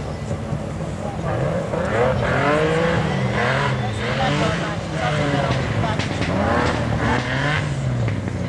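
BMW E30 rally car driven hard on a dirt and grass course, its engine revs climbing and dropping back several times as it comes closer and passes. It grows loud about a second and a half in and fades near the end.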